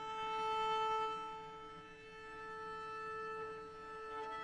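Cello bowed in one long sustained note, swelling a little and then easing while it is held. It is the first layer laid down at the start of a live-looped piece.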